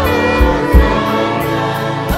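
Live gospel worship music: violins playing held lines with singing over a steady drum beat.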